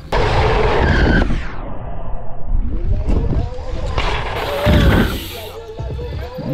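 Wind rumbling on the camera microphone and mountain bike tyres rolling over packed dirt during a run-in to a jump, with faint shouts in the background.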